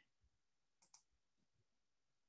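Near silence, with a couple of faint clicks close together about a second in.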